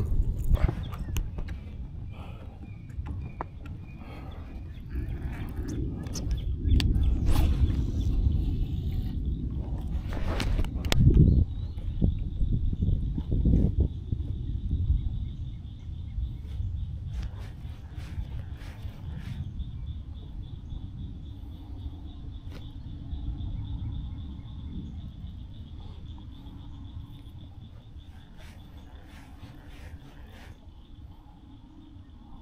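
Gusty wind buffeting the microphone in waves, heaviest in the first half, with scattered light clicks and knocks. A faint, steady high-pitched whine comes in about a third of the way through.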